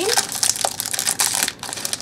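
Plastic wrapper crinkling and crackling as it is peeled off a block of polymer clay by hand, a rapid irregular run of crackles.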